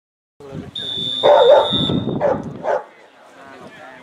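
A referee's whistle blown in one steady blast of about a second, over loud shouting from the pitch.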